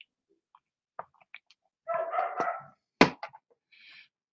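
A short, muffled animal call about two seconds in, among a few faint clicks, followed by a sharp click about a second later.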